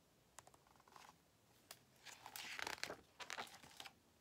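Quiet rustling and crinkling of a hardcover picture book's paper pages being handled and turned, with a few faint ticks at first and louder rustles in the second half.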